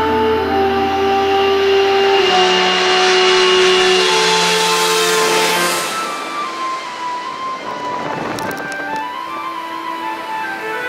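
Background music with long held notes over a jet airliner passing low overhead on landing approach. The engine roar swells to its loudest about four to five seconds in, with a whine falling in pitch, then dies away at about six seconds.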